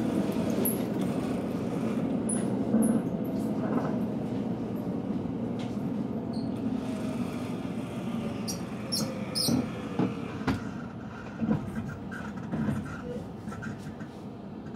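Steady low rumble inside a limited express train's passenger car, slowly easing off, with a few light clicks and knocks in the second half.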